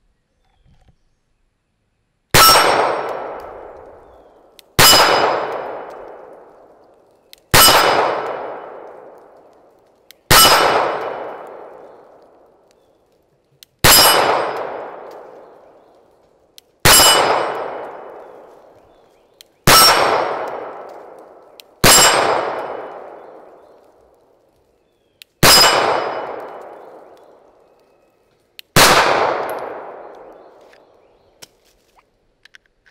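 Ten slow, aimed shots from a subcompact 9mm pistol, a few seconds apart. Each shot is followed by the ring of a struck steel plate target, fading over about two seconds.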